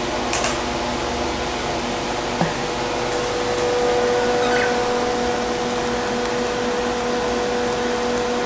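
A small electric motor running steadily, a whir with a humming tone that strengthens about three seconds in, and a couple of faint clicks in the first few seconds.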